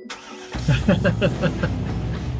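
A car engine being started: a quick run of starter-cranking pulses as it catches, over a steady low engine rumble that carries on running.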